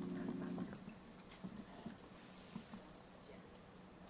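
A short voiced sound in the first moment, then faint, scattered clicks of spoons and chopsticks against small bowls as people eat, over a steady low hum.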